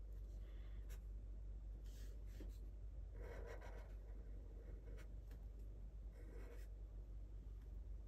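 Black Sharpie marker drawing on paper: faint scratching of the felt tip across the sheet in a few short, separate strokes.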